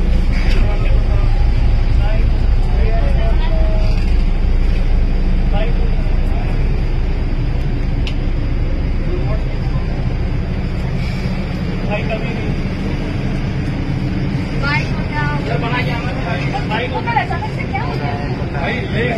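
Steady low engine and road rumble inside a sleeper bus cabin, with passengers' voices now and then, most clearly near the end.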